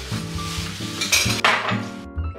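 Packing paper rustling and crinkling as glassware is unwrapped, with light clinks of glass; the loudest rustle comes a little past halfway. Background music with a steady bass line plays underneath.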